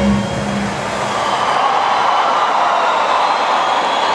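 Large concert crowd cheering and screaming in a steady wash of noise, while the last note of the music fades out in the first second.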